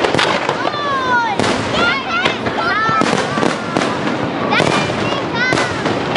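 Fireworks display: a dense run of crackling with sharp bangs every second or two, and high gliding tones over it.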